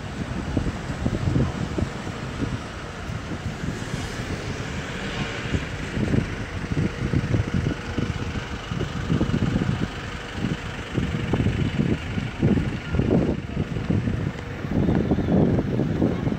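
Wind buffeting the microphone in irregular low gusts, over a steady background hiss of open-air beach noise.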